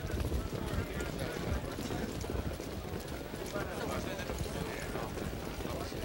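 Hoofbeats of a field of standardbred pacers picking up speed at the start of a harness race: a dense, uneven clatter of many hooves, with faint voices in the background.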